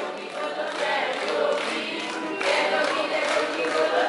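Live Hindu devotional bhajan sung by many voices together, the congregation singing the line back, with keyboard accompaniment. The singing swells louder about two and a half seconds in.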